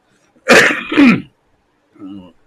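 A man clearing his throat loudly in two quick harsh pushes about half a second apart, ending in a falling grunt.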